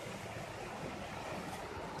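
A rocky creek rushing over stones, a steady, even rush of water.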